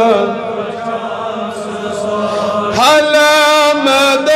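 A man chanting a Kashmiri naat unaccompanied, drawing out long, held melodic notes. After a softer stretch, a louder note slides up into place a little before the end and is held steady.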